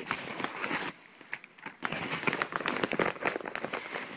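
Padded paper mailer and plastic-sleeved sticker packets crinkling and rustling as the contents are tipped out and handled, with a brief lull about a second in.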